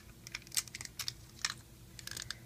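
Irregular plastic clicks and taps of Rainbow Loom pegs and base plates being handled and slid across to reposition them, several light clicks in quick succession.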